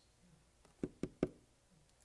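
Three quick, soft knocks about a fifth of a second apart, in an otherwise quiet pause.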